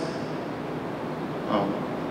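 Steady background room noise, with a man briefly saying "Oh" about one and a half seconds in.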